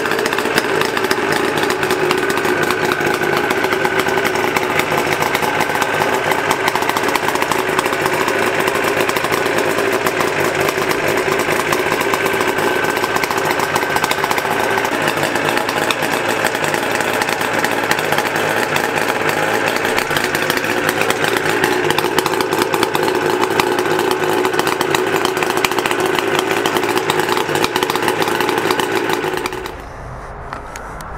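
Kawasaki H2 air-cooled three-cylinder two-stroke engine running steadily through its chrome expansion-chamber exhausts. The sound cuts off just before the end.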